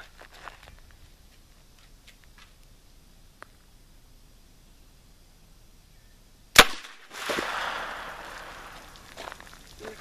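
A single suppressed shot from a 9mm JRC carbine fitted with a Thompson Machine ISIS-2 suppressor, about six and a half seconds in. Just after it comes a splash and spatter of water from the burst jug, fading over about two seconds.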